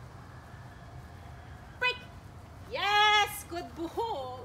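A young Nova Scotia duck tolling retriever vocalizing in excitement: a short high yip just before two seconds in, then a louder, drawn-out whining cry about three seconds in, followed by a few small sounds.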